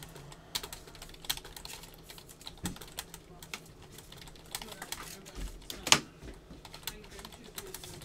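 Typing on a computer keyboard: irregular light clicks, with one sharper, louder click a little before six seconds in.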